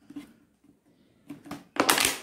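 A thin plastic bottle handled in the hands: a few faint clicks, then a loud crackling rustle of the plastic near the end as it is gripped.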